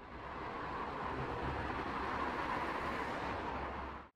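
Street ambience of city traffic: a steady wash of passing vehicles. It fades in at the start and cuts off suddenly at the end.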